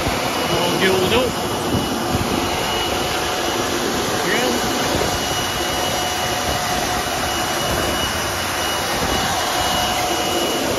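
John Deere tractor pulling a Herriau vacuum precision pea drill at working speed. The engine runs steadily under a continuous high whine, typical of the drill's suction fan, along with the rumble of the coulters, press wheels and tines working the soil.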